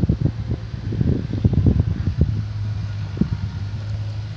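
Handling noise on a phone's microphone as the camera is moved: dull low thumps and rustling, busiest in the first two seconds or so, over a steady low hum.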